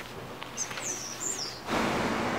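Small birds chirping in short, high calls that glide up and down, then a minivan driving close past, its engine and tyre noise swelling suddenly near the end.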